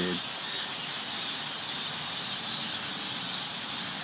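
A large flock of birds all chirping at the same time, a loud, dense and steady wall of high chirps with no single call standing out.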